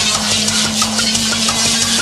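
Jungle drum and bass played loud over a club sound system: a fast, dense drum pattern over a steady, held bass note.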